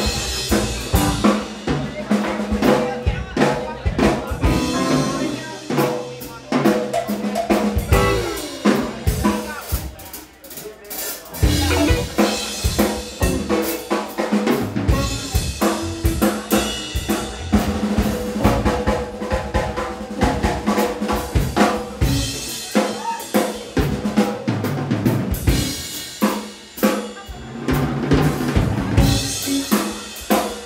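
A live band plays an instrumental passage led by drums and hand percussion, dense with snare and bass-drum hits, over a walking upright bass line. The playing dips briefly about ten seconds in.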